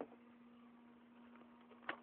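Near silence with a steady low hum, broken by a click at the start and another just before the end: handling noise as a hand-held camera is moved and a light is picked up.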